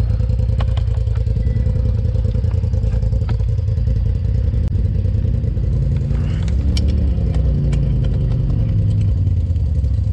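Polaris RZR side-by-side engine running at low speed, its revs rising and falling briefly a few seconds past the middle, with scattered clicks and knocks on top.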